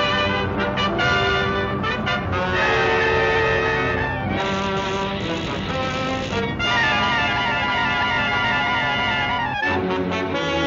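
Orchestral film score led by brass, playing sustained dramatic phrases that change every second or two, with a short break near the end.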